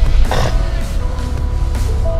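A Ford Escape's engine starting: a short loud burst in the first half second as it fires, then a steady low idle. Background music plays over it.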